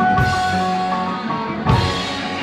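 Live band playing rock music, led by the drum kit: two crashes about a second and a half apart over held notes from the band.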